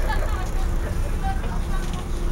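Steady low rumble of a city bus running, heard from inside the passenger cabin, with faint passengers' voices in the background.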